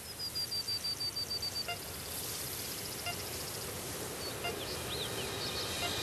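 Birds calling over a steady background hiss: a quick trill of about ten high, clear notes, slightly falling, in the first second and a half, then fainter notes and a few short rising-and-falling whistles near the end.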